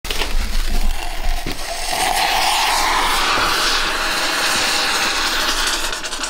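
A thermite mix of magnetite black sand and aluminium powder burning, a steady loud hissing roar, with crackling in the first second or so.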